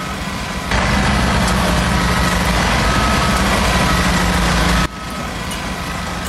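Steady engine-like mechanical noise with a strong low hum. It comes in abruptly about a second in and drops off sharply near the end.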